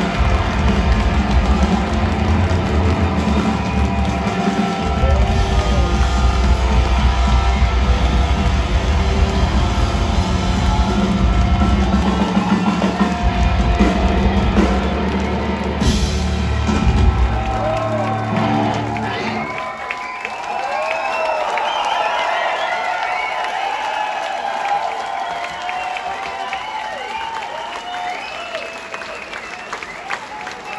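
Punk rock band playing live at full volume with drums, bass and electric guitars, the song ending about two-thirds of the way in. The crowd then cheers and shouts.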